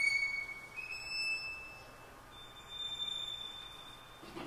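Solo violin playing three quiet, very high held notes, each higher than the last, with the orchestra silent.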